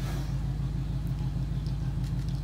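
A steady low mechanical hum that holds at the same level throughout.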